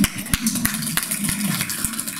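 A small group of people applauding: a dense, irregular patter of hand claps.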